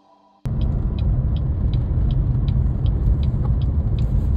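Road noise inside a moving vehicle's cab at highway speed: a steady low rumble that cuts in suddenly about half a second in, with faint light ticking a few times a second.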